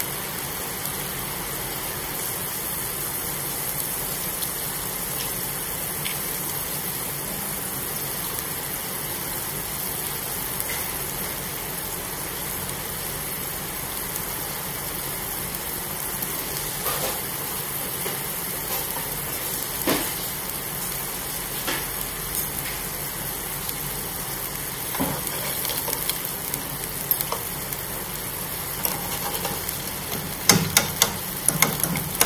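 Water boiling hard in a nonstick frying pan with sliced shallots, a steady bubbling hiss. A few sharp taps come in the second half as eggs go into the pan, and a spatula clicks against the pan near the end.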